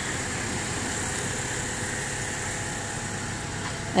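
Steady mechanical hum and noise with no distinct events.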